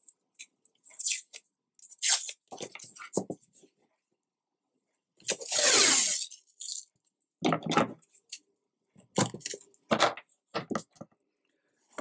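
Black construction tape pulled off its roll in one long rip of about a second, falling in pitch, among scattered clicks and rustles of the tape and roll being handled.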